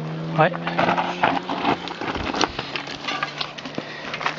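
Mountain bikes rolling down a rocky forest singletrack: tyres crunching over gravel and stones and the bikes rattling in many scattered clicks. A steady low hum runs underneath and drops out for a moment midway.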